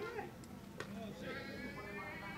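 High-pitched shouted calls, with one drawn-out call near the end, and a single sharp click a little under a second in.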